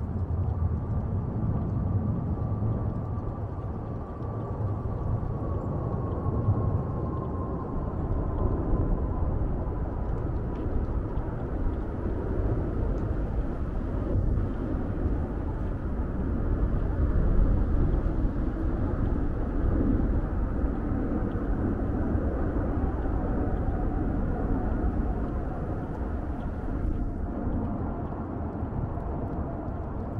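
Jet aircraft passing overhead at a distance: a steady low rumble with a faint whine that slowly falls in pitch, swelling a little past the middle.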